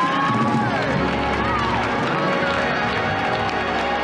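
Church congregation calling out and praising over loud live gospel music, with voices rising and falling in pitch above it.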